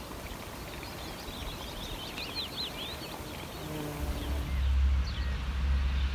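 Outdoor countryside ambience with small birds chirping and twittering in quick high calls; about four seconds in, a steady low rumble comes in underneath.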